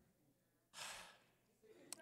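A man's single audible breath, about a second in, close to the microphone; otherwise near silence.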